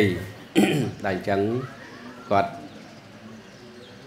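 A man speaking Khmer into a handheld microphone: a monk preaching in short phrases, with a pause of about a second and a half near the end.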